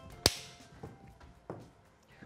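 A single sharp clap about a quarter of a second in, given as the cue for "action", followed by two fainter knocks about a second and a second and a half in.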